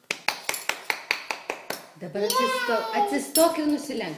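A quick run of sharp clinking clicks, about five a second for two seconds, from a small object being handled by a toddler, followed by the toddler's high voice in sing-song vocalising.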